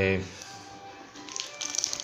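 Plastic wrap crinkling and crackling as a shrink-wrapped motorcycle rear sprocket is picked up and handled, in short irregular bursts that start over a second in. A drawn-out hesitation 'é...' trails off at the very start.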